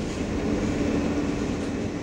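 Subway train running: a steady rumble with a low, even hum.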